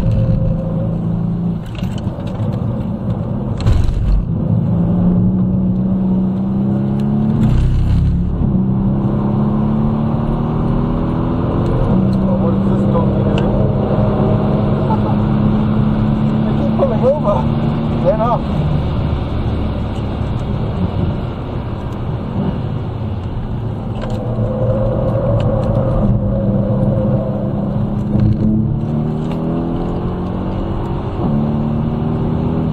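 Mercedes-AMG C63's V8 heard from inside the cabin under hard track driving: the engine note climbs through the gears with drops at each upshift, holds a steady pitch for several seconds along a straight, falls away as the car slows, then climbs again near the end.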